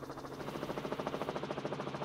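Helicopter rotor chop with a steady engine hum underneath, picked up on the helicopter's own live microphone: a fast, even pulsing of about eleven beats a second.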